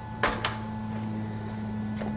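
Steady low background hum with one short knock about a quarter second in, such as a hard plastic tool case or a tool being set down on a workbench.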